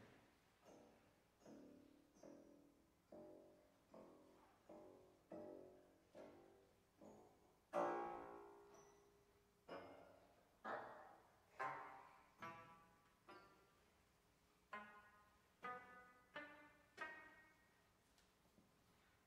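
Grand piano sounding soft single notes one at a time, just under one a second, each ringing and dying away. The loudest note comes about eight seconds in, and after a short pause the notes turn brighter and higher-pitched.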